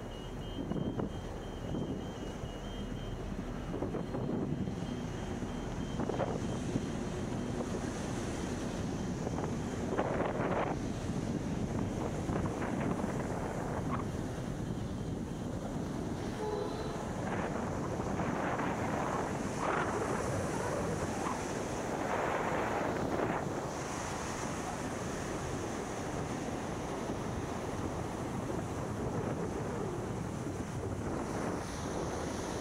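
Wind buffeting the microphone over small surf breaking on a sandy beach, swelling louder now and then. A truck's reversing beeper sounds faintly as a repeating high beep and stops about seven seconds in.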